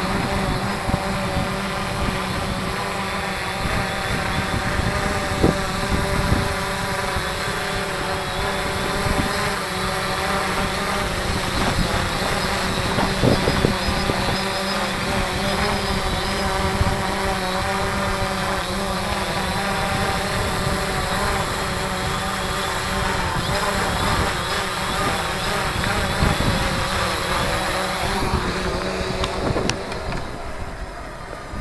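3DR Solo quadcopter hovering close by, its propellers giving a steady whine of several tones that wavers as the motors fight gusty wind, with wind buffeting the microphone. The sound drops away near the end.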